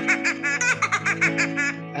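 A rapid run of short, high laughing syllables, about eight a second, stopping near the end, over steady background music.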